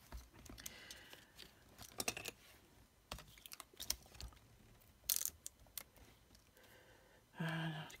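Soft scattered clicks, taps and light rustles of small paper pieces and 3D foam adhesive pads being handled and pressed on a cutting mat, the sharpest tap about five seconds in.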